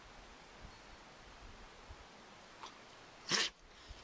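A dog gives one short, sharp sound about three seconds in, against a quiet background.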